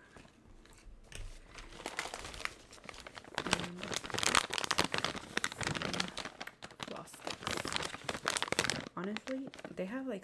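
A plastic pouch of floss picks crinkling and crackling as it is handled and turned over close to the microphone, in irregular bursts.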